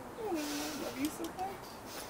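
A woman's soft, drawn-out vocal sound, falling in pitch and then held, with a few quieter murmured fragments after it; no clear words.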